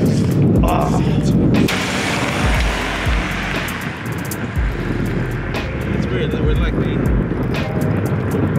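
Wind buffeting the microphone in gusts, with deep thumps and a rushing noise that swells about two seconds in and fades after a few seconds.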